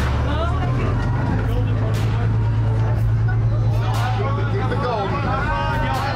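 Tour boat's horn sounding one long, low blast of several seconds, starting just after the beginning and easing off near the end, where voices come in.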